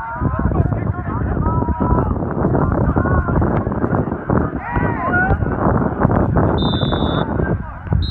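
Players shouting on the field over wind buffeting the microphone. About two-thirds of the way in comes a short, high referee's whistle blast, with a brief second toot at the very end.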